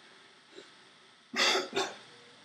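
A man coughing twice in quick succession, about a second and a half in, the second cough shorter than the first.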